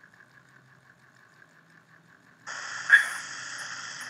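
Near silence for about two and a half seconds, then a steady background hiss sets in abruptly, with a short louder sound about three seconds in.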